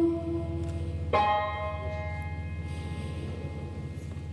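A singer's held note fades out, then a single chord is struck on an electric keyboard about a second in and left to ring, with a bell-like tone, decaying slowly over a low sustained hum.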